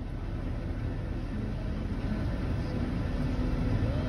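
Steady low rumble of a car's cabin with the engine running.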